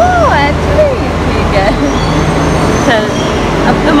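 A woman's short exclamations and laughter over a steady low rumble of metro station noise.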